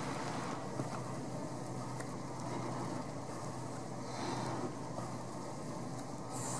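Steady outdoor background noise with a faint low hum, even throughout and with no distinct events.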